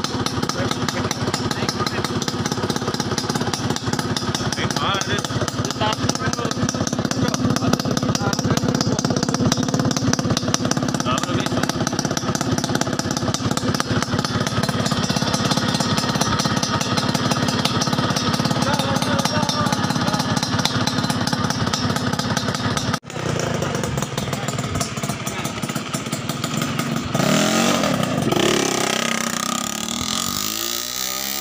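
Yamaha 125ZR's two-stroke single-cylinder engine running through a custom chrome exhaust pipe, a fast steady pulsing. After a cut about 23 s in, it revs up with rising pitch as the bike pulls away near the end.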